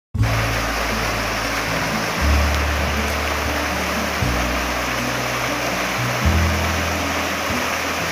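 Water rushing and splashing over rocks in a small stream cascade, mixed with background music whose low held bass notes change about every two seconds.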